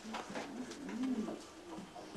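A person's low, wordless voice, murmuring with a gentle rise and fall in pitch about a second in.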